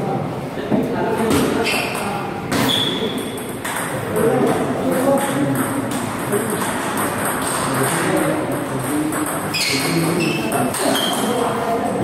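Table tennis rally: the ball clicking off the paddles and bouncing on the table in a steady back-and-forth run of sharp ticks, some with a short high ping.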